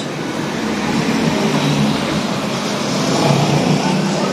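Road traffic passing close by: a steady rush of engine and tyre noise that swells a little near the end.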